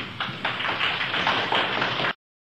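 Audience applause: many quick, irregular hand claps from a lecture hall crowd, building up within the first half second.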